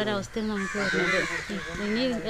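A woman talking in Malayalam, with a harsh bird call, like a crow's caw, in the background about a second in.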